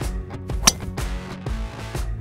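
Background music with a steady beat, and about two-thirds of a second in a single sharp, high 'ting' of a driver's face striking a golf ball off the tee.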